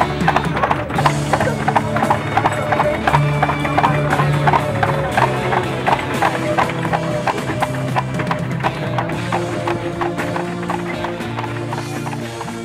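Hooves of a pair of carriage horses clip-clopping on an asphalt road in a quick, even rhythm of about four beats a second, fading near the end, over background music.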